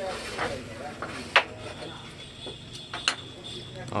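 Sharp click of a carrom striker knocking into the wooden carrom men on the board, about a second and a half in, with a few fainter clicks of pieces and striker around it.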